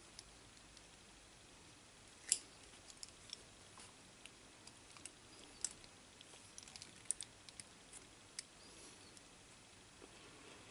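Faint, scattered clicks and small rattles of test-lead clips being handled and clipped onto an LED's leads, the loudest click about two seconds in and a cluster of clicks around seven seconds.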